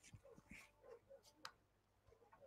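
Near silence: faint room tone with a few soft clicks, one sharper click about one and a half seconds in.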